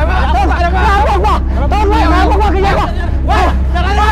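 Several men shouting and crying out over one another in panic, wordless yells rather than clear speech, over a steady low hum.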